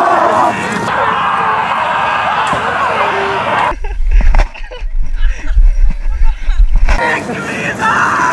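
A group of people yelling as they charge. About four seconds in, the yelling gives way to three seconds of loud low rumble and knocking, the buffeting and jostling of a small action camera's microphone, before the voices return near the end.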